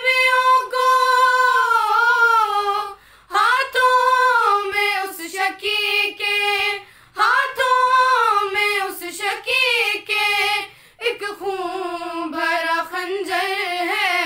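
Three young women singing a noha, a Shia lament in Urdu, together in unison without instruments, in long held phrases broken by short breaths about every four seconds.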